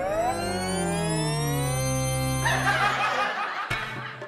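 Comedic TV sound-effect music: a cluster of tones glides up in pitch for about two seconds and then holds, while lower tones slide down. About halfway through, a stuttering laugh-like sound joins before it all fades out.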